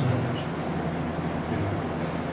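Room tone: a steady low hum with a faint hiss, and one faint click about half a second in.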